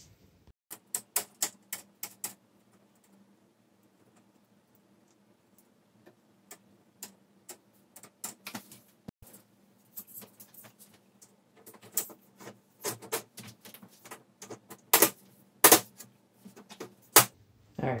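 Irregular sharp clicks and knocks of the LCD TV panel's plastic and metal frame parts and glass being handled and fitted together. A quick cluster comes about a second in, a few scattered ones follow, and a denser run starts about twelve seconds in, the loudest knocks near the end.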